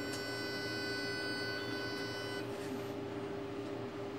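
Ultrasound machine giving a high, many-toned electronic whine for about two and a half seconds, which starts with a click and cuts off suddenly, over a steady low hum.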